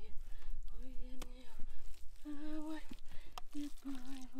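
A person's voice humming a slow tune in short held notes, a few at slightly different pitches about a second apart. There is a single sharp click about a second in, over a low steady rumble.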